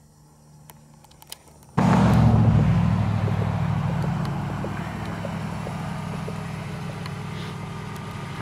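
Car pulling up close and slowing to a stop, its engine and tyres loud at first and then easing to a steady running sound. The sound starts abruptly about two seconds in, after a faint start.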